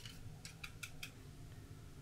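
Wooden chopsticks beating eggs in a ceramic bowl, clicking lightly against its side: a handful of faint clicks in the first second, then they stop.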